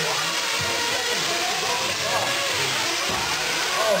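Several 1/8-scale nitro RC truggies' small glow-fuel two-stroke engines running and revving as they race, in a continuous din, with an announcer's voice mixed in.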